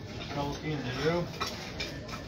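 Quiet voices talking in the background, with light clicks and rustles from broom straw and a broom handle being worked by hand.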